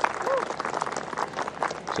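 Golf gallery applauding a holed putt: scattered clapping from a small crowd, with a short voice call about a third of a second in.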